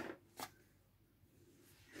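Near silence with one short, light click about half a second in, like a small plastic toy brick set down on a wooden tabletop.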